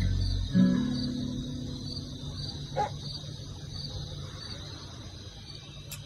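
The last chord of an acoustic guitar ringing out and slowly fading, after the backing track's low notes stop about half a second in. Crickets chirp at an even pulse behind it.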